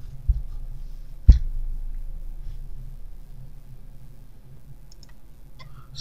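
Quiet room hum with one sharp knock about a second in, and a few faint clicks near the end.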